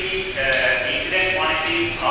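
Speech: a man talking continuously into a handheld microphone.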